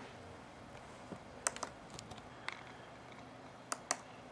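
A handful of quiet, irregular clicks from a laptop's keys and buttons being pressed, two close together near the end.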